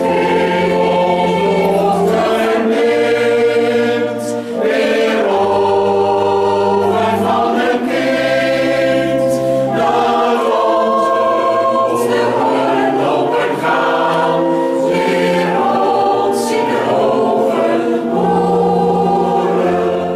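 A choir singing a slow song in long held chords, with a low part changing note every second or two.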